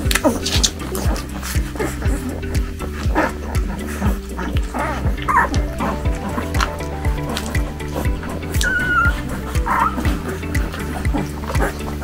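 Background music with a steady beat, over which newborn puppies squeak and whimper a few times while nursing, the longest squeak coming about nine seconds in.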